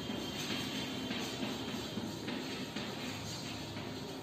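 Chalk scraping and tapping on a chalkboard as words are written out in a run of short strokes.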